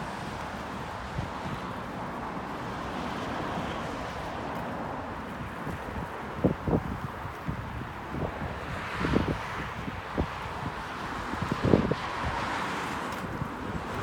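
Steady road traffic from a multi-lane road, picked up by an iPhone X's microphone. Between about halfway and near the end, wind buffets the microphone in short, loud thumps.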